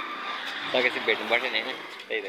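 A man talking close to the phone microphone, over low steady street background noise.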